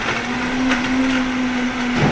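Vitamix countertop blender running at a steady speed, blending a pale liquid. The motor holds one steady whirring pitch throughout.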